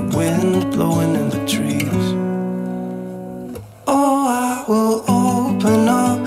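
Background song with strummed acoustic guitar. About two seconds in the music thins to one held chord that slowly fades, then picks up again at full level near four seconds.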